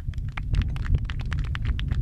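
Quick, irregular sharp clicks, several a second, over a steady low rumble picked up by an unattended stand microphone.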